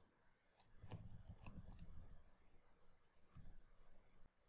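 Faint computer keyboard clicks: a quick run of keystrokes about a second in, then one more click near the end.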